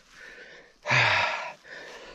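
A man breathing hard after a crash: a faint breath, then a loud, rough gasping breath with a slight groan about a second in, then another softer breath near the end.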